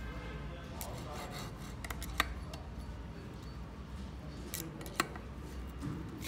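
Hex screwdriver turning and tightening the bolts on the aluminium Z-axis rail of a Wanhao D8 3D printer: faint scraping and rubbing with a few sharp metallic clicks.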